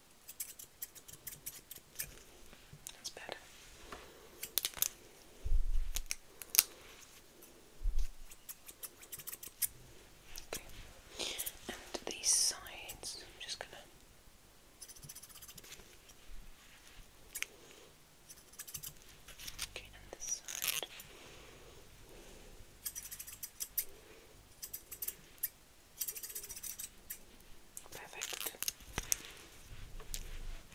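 Thinning scissors snipping close to the microphone: irregular runs of crisp clicks, with a comb moving nearby.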